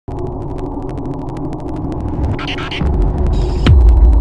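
Logo-intro sound effect: a steady low drone full of crackles builds into a deep boom with a sharp hit about three and a half seconds in, the loudest moment as the logo appears.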